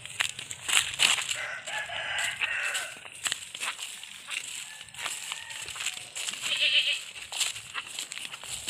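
Footsteps of rubber slippers on a dirt path, with brush rustling and crackling underfoot. A farm animal calls in the background twice, a longer call about two seconds in and a shorter one near seven seconds.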